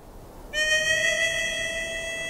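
Western-style music: a harmonica starts one long held note about half a second in, coming up out of a faint hiss.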